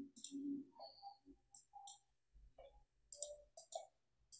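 Faint, irregular clicks at a computer, with a few scattered clicks and then a quick group of several near the end.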